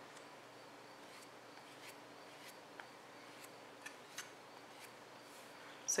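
Faint scraping with light scattered ticks as a potter's rib is drawn over the stiffening clay of a hollow pinch-pot rattle to smooth its surface, over a faint steady hum.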